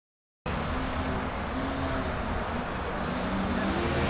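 Silence for about half a second, then outdoor background noise with distant motorcycle engines running, their pitch rising and falling as they rev.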